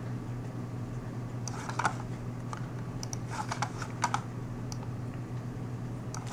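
Computer keyboard keys clicking in a few short clusters of taps, over a steady low hum.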